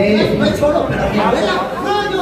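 Speech: men talking into microphones over a PA, with overlapping chatter in a large room.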